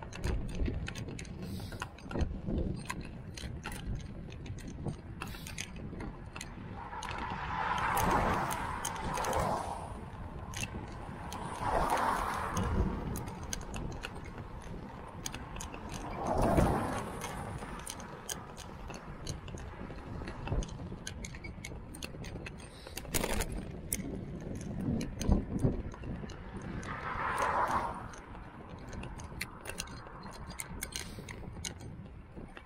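Ride noise from a fat bike on wet tarmac: constant irregular clicking and rattling from the bike and its handlebar-mounted camera over a low rumble. Four times a louder rushing swell rises and fades.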